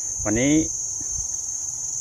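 A steady, high-pitched chorus of insects buzzing without a break.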